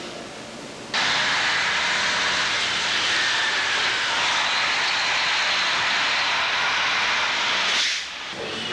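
A loud, steady rushing roar of outdoor background noise. It starts abruptly about a second in and cuts off just before the end.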